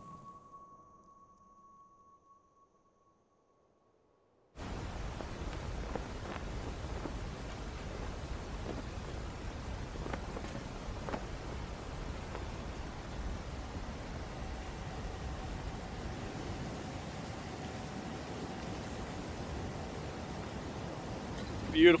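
A held music note fades out into silence. After about four and a half seconds a steady rush of wind on the microphone starts suddenly and carries on evenly.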